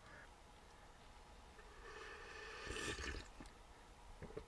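A faint sip of hot coffee from a metal mug: a soft slurp that swells about halfway through and fades out before the end.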